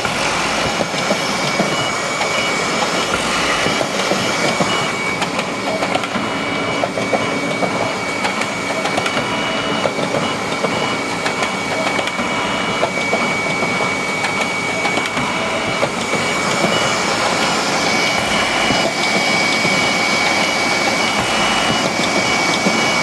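Morgana DigiFold creaser-folder running while it feeds, creases and folds sheets of digitally printed stock: a steady mechanical whir with a rapid, continuous clatter and a steady high whine.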